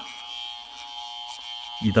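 Chinese-made rotary tool switched on at its lowest speed setting, giving a steady electric buzz of several fixed tones. At this setting it does not run properly, which the owner puts down to Chinese and Korean mains electricity being different.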